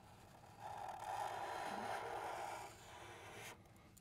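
Sharpie marker tip drawing a curved line on marker paper: a faint, steady scratching that starts about half a second in, lasts about two seconds, then goes softer before stopping.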